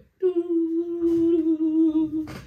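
A man humming one long, held note that drops slightly in pitch about halfway through, mimicking the spooky, Halloween-like beat just discussed.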